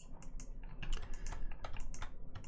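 Irregular clicking and tapping of a computer keyboard and mouse, several clicks a second.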